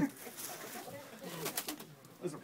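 Plastic stretch wrap crinkling and crackling as it is pulled and torn by hand, with a sharp crackle at the start and a short burst of crackles about a second and a half in, over faint low murmuring voices.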